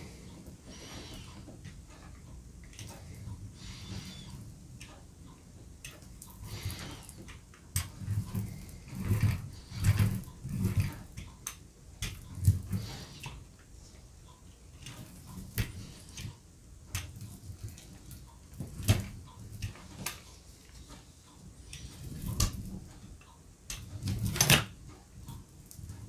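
An 8-inch rubber brayer rolled back and forth over wet acrylic paint on a Gelli plate, in irregular strokes with soft rolling and peeling sounds, louder and more frequent after the first several seconds. The roller grips the tacky paint with a slight suction as it moves.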